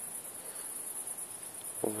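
Crickets chirping in a steady, high-pitched, pulsing trill.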